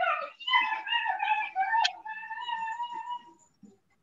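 A dog whining: one long, high, slightly wavering whine that fades out about three seconds in, with a single sharp click partway through.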